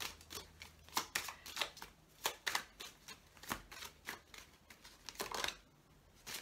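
A tarot deck being shuffled by hand: a run of sharp, irregular card snaps and slaps, with a denser flurry a little after five seconds in.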